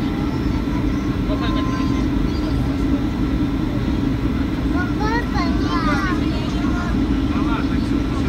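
Steady low rumble of a moving vehicle, unchanging throughout, with faint voices about five seconds in.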